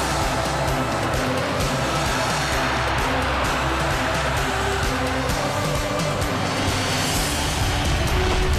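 Theme music of a televised football broadcast's opening titles, dense and steady.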